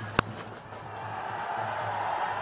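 Cricket bat striking the ball once with a sharp crack, then stadium crowd noise swelling steadily as the ball is hit for six.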